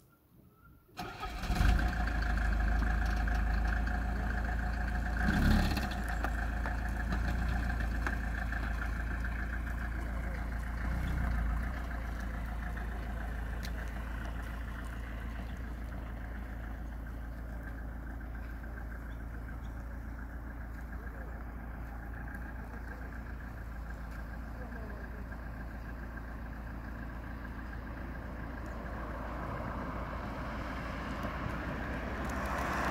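An engine starts about a second in, then runs steadily with a low rumble that slowly grows quieter.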